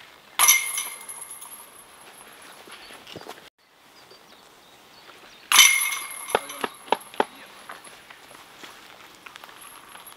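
Discs striking the hanging chains of a metal disc golf basket twice: a jangling crash with lingering metallic ringing about half a second in, and another about five and a half seconds in. The second is followed by a few lighter clinks as the disc drops into the basket and settles.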